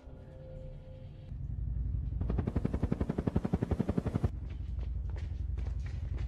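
Film soundtrack: a low rumble builds, then about two seconds of rapid automatic gunfire at roughly ten shots a second, followed by scattered sharper cracks over the rumble.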